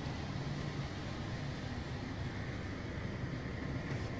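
Steady low hum and hiss of indoor background noise, with no distinct events.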